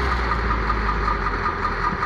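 Caterpillar IT28G wheel loader's diesel engine running at a steady pitch as the machine drives slowly, with a faint regular tick about four times a second.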